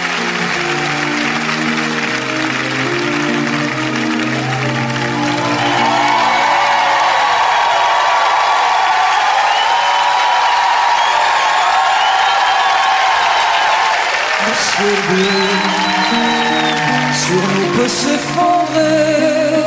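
Live concert recording: an audience applauding and cheering over a band's held introduction chords, with the bass dropping out in the middle and returning near the end.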